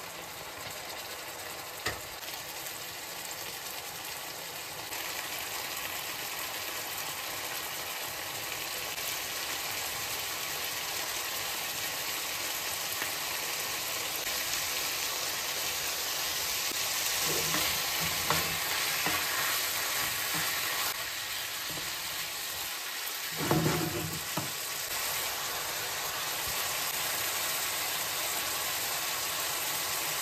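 Diced chicken sizzling in a nonstick frying pan, the sizzle slowly growing louder. In the second half a utensil knocks and scrapes in the pan a few times as the pieces are stirred.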